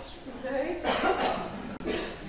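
A person coughing about a second in, amid quiet speech.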